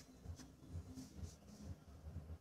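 Dressmaking scissors cutting through two layers of folded fabric, faint and repeated about four times a second.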